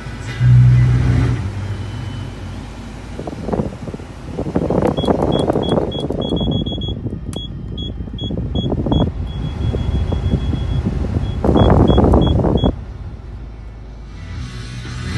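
Automatic climate-control panel beeping with each button press, a run of short high beeps in two groups, while the air blower rushes in surges and then cuts off suddenly near the end. A brief low hum about half a second in.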